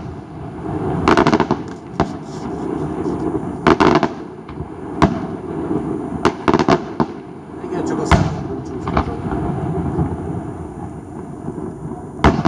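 Aerial fireworks shells bursting over the water: a series of sharp bangs, a bang every second or two and some in quick clusters, over a continuous rumble and crackle.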